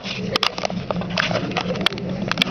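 Classroom background noise: a steady low hum with many scattered clicks and rustles, and faint murmuring from students.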